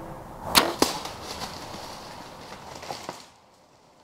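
A bow shot at a whitetail buck: the sharp snap of the bowstring's release, then about a quarter second later the arrow's hit, which the hunter calls a double-lung hit. It is followed by a fading rustle of the deer running off through leaves and brush.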